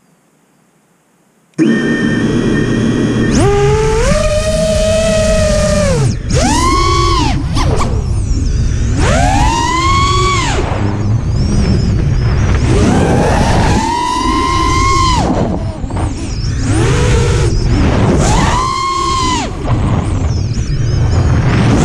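Motors of an FPV racing quadcopter, heard through its onboard GoPro. They start suddenly about a second and a half in, then whine in repeated rising and falling sweeps as the throttle is punched and eased, over a steady rushing noise.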